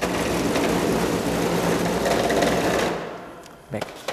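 The small DC drive motors in a wheeled robot base whirring steadily as it drives for about three seconds, then winding down.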